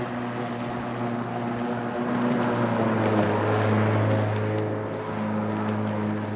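Lawn mower running with a steady hum, growing louder in the middle as it passes close by, then easing off a little near the end.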